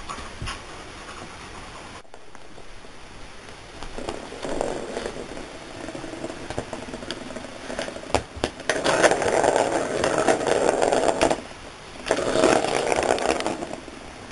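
A cat playing at a circular scratcher toy, a plastic ball track around a corrugated cardboard pad: rough scraping and rattling in bursts, a short one about four seconds in, then two longer ones in the second half.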